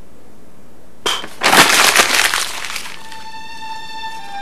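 A sudden crash of breaking glass about a second in, a sharp crack followed by just over a second of shattering. It gives way to a held synthesizer music note near the end.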